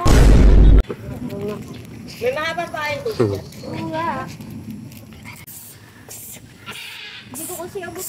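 A loud rumbling burst of microphone handling noise for just under a second at the start as the phone is swung around, then scattered short voice calls and shouts.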